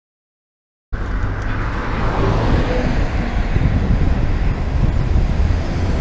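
Silence, then about a second in, street traffic noise starts suddenly and runs on steadily with a heavy low rumble of wind on a camera mounted on a moving bicycle.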